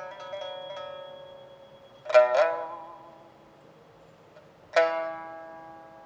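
Pipa played solo: a few quick, soft plucked notes, then a loud plucked chord about two seconds in with a brief bend in pitch. A single loud plucked note near the end rings out and slowly fades.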